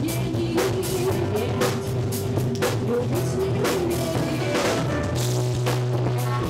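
A live rock band playing. A drum kit strikes about twice a second over a steady bass line and electric guitar, and a woman sings into a handheld microphone.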